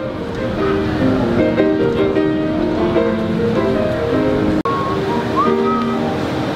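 Music: a song with held instrumental notes, cutting out very briefly a little after four and a half seconds in.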